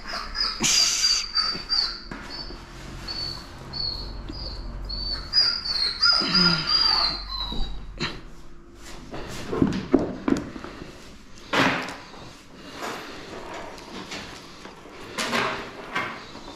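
A dog whining in one long, high, wavering whine that lasts about the first half, breaking into a falling cry just before it stops. Later come sharp knocks and scuffling, from the dog struggling against being held in a plastic cone collar.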